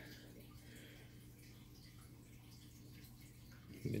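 Near silence: quiet room tone with a faint, steady low hum.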